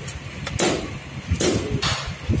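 Hands working an aluminium window shutter frame and its locking hardware: three short scraping noises, with low rumbling handling noise in between.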